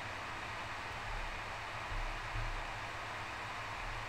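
Steady background hiss with a low hum underneath, with no distinct events.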